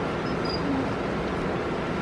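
Steady, even background noise with no distinct events, and a faint short high tone about half a second in.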